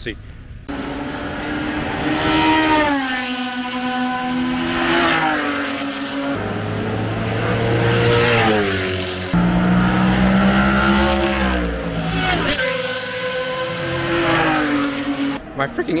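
Sports-prototype race cars passing at high revs on the circuit, several times. Each engine note drops in pitch as the car goes by and steps down through gear changes. It is very loud, "a heck of a lot louder than the modern F1 cars".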